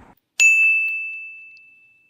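A single bright ding sound effect: one sharp strike that leaves a clear high ringing tone, fading out over about a second and a half.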